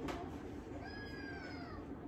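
A baby gives one drawn-out, high-pitched whining squeal about a second in, falling in pitch as it goes, after a light knock at the start.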